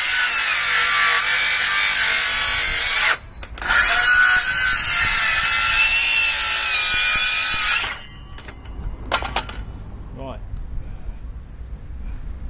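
DeWalt cordless circular saw cutting through a thick, fresh, still-wet softwood garden sleeper, the motor struggling on a battery that needs changing. It runs in two long cuts with a brief stop a little after three seconds, and stops for good about eight seconds in. Quieter knocks of the timber being handled follow.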